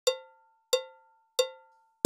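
A count-in before a band's entry: three evenly spaced cowbell-like metallic clicks, about two-thirds of a second apart, each ringing briefly.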